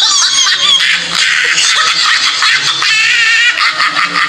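High-pitched laughter from several voices, loud and continuous, dropped in as a sound effect that starts abruptly.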